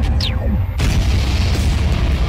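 Intro music with cinematic sound effects: a falling swoosh that drops in pitch, then a deep boom hit about a second in, over heavy, bass-laden music.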